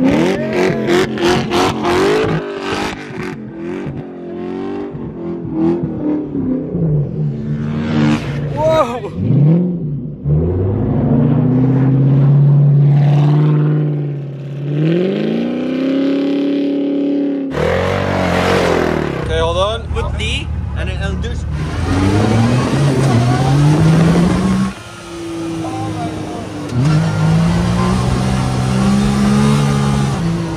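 First-generation Ford GT's supercharged V8 revving up and down again and again, its pitch swooping as the wheels spin and the car slides sideways on snow.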